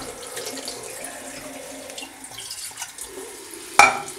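Bathroom sink tap running steadily into the basin, with one sharp knock near the end.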